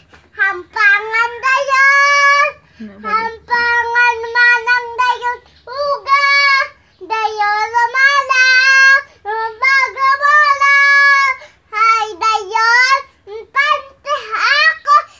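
A young girl singing unaccompanied in a high voice, a string of long held notes broken by short pauses for breath.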